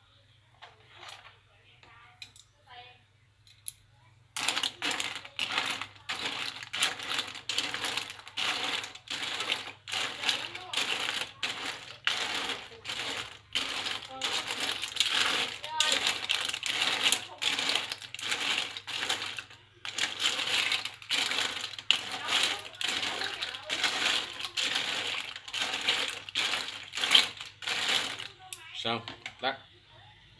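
Cockle shells clattering against one another and the sides of a stainless steel pot as they are stirred in boiling water to open them: a run of rapid clicks and knocks that starts about four seconds in, pauses briefly about two-thirds of the way through, and stops just before the end.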